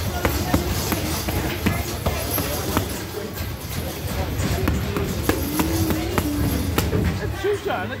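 Boxing gloves punching focus mitts: repeated sharp slaps that come in quick, irregular combinations.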